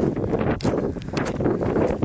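Wind buffeting the microphone in a low, continuous rumble, with footsteps rustling through rough, tussocky grass.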